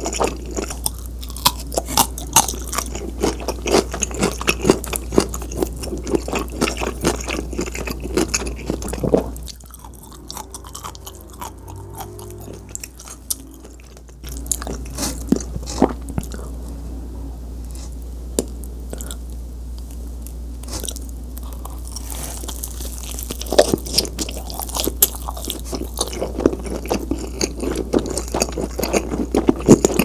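Close-miked chewing and biting of cheesy pizza: wet mouth sounds with many sharp clicks. It goes quieter for a few seconds about a third of the way in, then picks up again and grows busier near the end.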